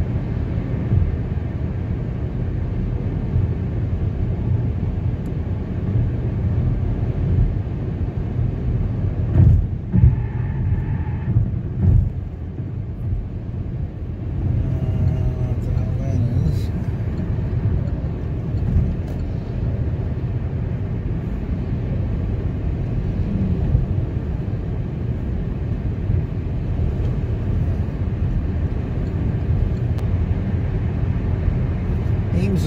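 Steady low road and engine noise of a car cruising at highway speed, heard from inside the cabin. A few louder bumps come about ten to twelve seconds in.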